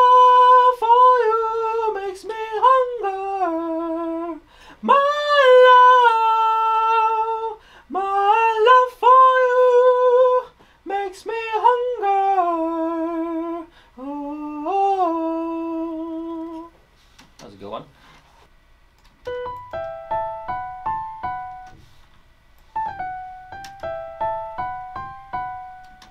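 A voice sings a slow, soul-style melody in a high register, in several held phrases with slides between notes. It stops about two-thirds of the way through. A keyboard melody of short, rising and falling notes follows, played from a virtual instrument over a light pulse.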